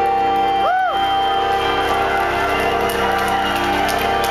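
Live rock band holding a sustained chord, with one note that bends up and back down about half a second in, and some crowd cheering faintly underneath.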